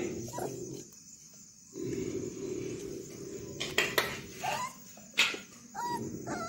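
A puppy whimpering in short, high, arching whines in the second half, with a few sharp taps or clicks among them.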